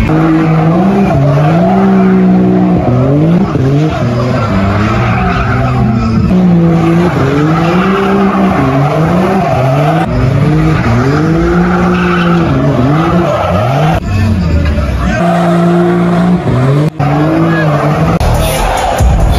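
A vehicle's engine revving up and down over and over while its tyres squeal and skid on pavement, as the vehicle spins donuts.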